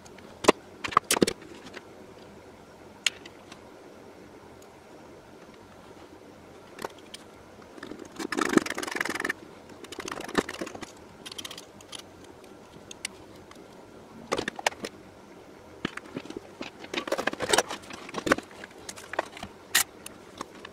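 Hand tools being handled on a workbench: scattered metallic clicks and clacks as pliers, a screwdriver and other tools are worked, picked up and set down. There is a longer scraping rustle about eight seconds in and a flurry of clatter near the end.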